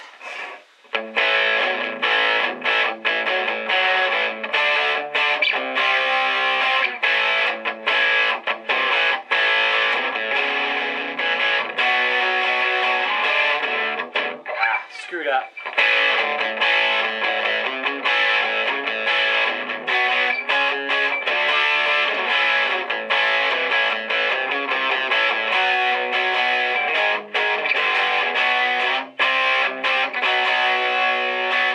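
Electric guitar played through a Boss ME-80 multi-effects processor with an overdriven tone, a continuous run of chords and single notes. The playing breaks off briefly about halfway through, with a short sliding pitch sweep, then resumes.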